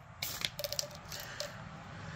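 A few faint clicks and rattles from short lengths of corrugated plastic fuel line being picked up and handled, mostly in the first half second.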